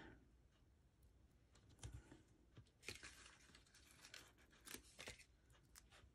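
Near silence with a few faint rustles and small clicks of paper handling: adhesive foam dots being peeled from their backing and pressed onto a cardstock piece.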